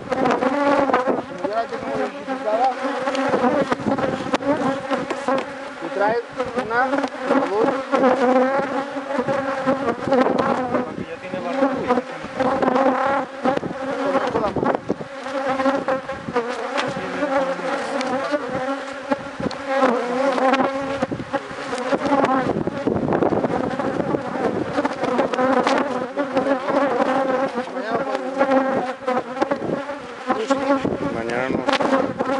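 Honeybees buzzing in large numbers around an opened hive: a dense, continuous hum made of many overlapping buzzes that waver up and down in pitch as the bees fly close past.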